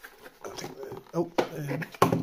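Cardboard scraping and rustling as an inner box is pulled up and out of a cardboard shipping box.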